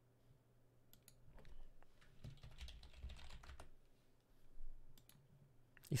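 Faint typing on a computer keyboard: scattered soft key clicks with short pauses between them.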